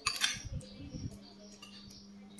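A metal spoon and fork clinking and scraping against a plate and a ceramic soup bowl during a meal. The sharpest clinks come right at the start, followed by softer scrapes.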